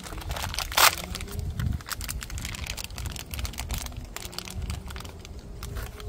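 Small plastic parts bag crinkling and crackling as it is handled and torn open by hand, with one louder crackle just under a second in.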